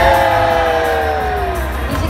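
A female pop singer's voice holding one long note that slowly sinks in pitch and fades out near the end, over a pop backing track with a steady bass line.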